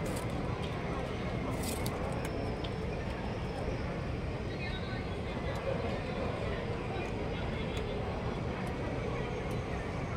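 Steady outdoor background noise with faint, indistinct voices in the distance, and a few sharp clicks about two seconds in.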